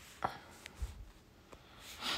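A few faint, sharp taps and one dull thump, about four in two seconds: fingertips tapping on a phone's touchscreen and handling the phone.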